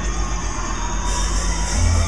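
Loud music at a live thrash metal show, recorded from the crowd: a steady low bass rumble, with a bright high wash coming in about halfway through.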